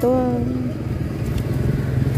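A motor vehicle engine running steadily, a low even hum.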